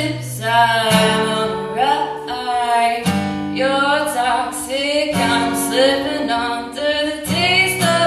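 A woman singing while strumming an acoustic guitar, the chords changing about every two seconds under the sung melody.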